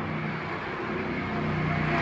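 Engine of a passing road vehicle, a steady hum that grows louder toward the end.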